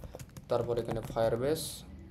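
Computer keyboard typing: a quick run of short keystroke clicks at the start, with a man's voice speaking briefly in the middle.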